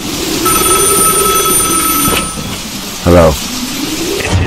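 Opening of a recorded R&B track's intro, just after a break between songs. A steady hiss runs throughout with a few faint high steady tones in the first half, and a short loud vocal sound comes about three seconds in.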